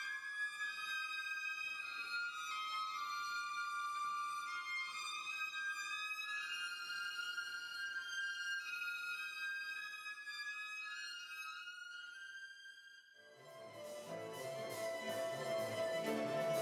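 Solo violin with a chamber ensemble playing contemporary concert music: high, sustained notes that shift slowly from one pitch to the next, with little low sound beneath. About thirteen seconds in, the sound dips briefly and the ensemble comes in with fuller, lower chords.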